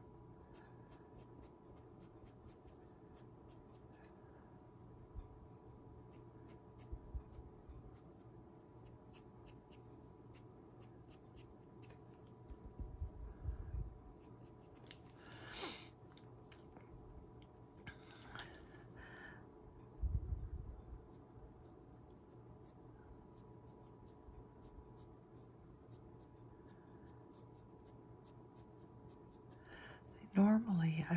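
Faint scratching of a pastel pencil stroking across Pastelmat pastel card, in a few short bursts around the middle, with brief soft knocks. A steady low electrical hum runs underneath.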